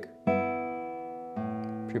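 Nylon-string classical guitar with open strings plucked in a slow finger-style pattern: a chord about a quarter second in and another pluck with a low bass note near a second and a half in, each ringing and fading.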